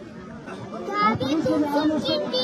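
A boy's high-pitched voice speaking loudly, starting about a second in.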